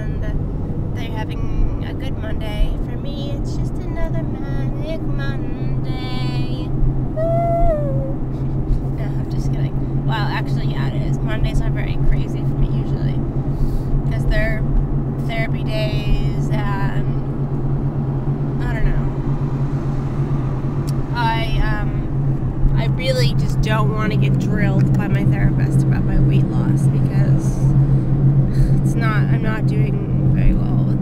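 Steady low drone of a car's engine and tyres heard from inside the cabin while driving, with a voice faintly over it.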